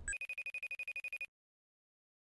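Electronic telephone ringtone: a fast, even trill lasting about a second that cuts off suddenly.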